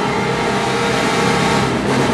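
Symphony orchestra playing a loud, dense sustained passage.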